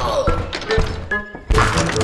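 Cartoon background music with a few light knocks, then one heavy thunk about one and a half seconds in.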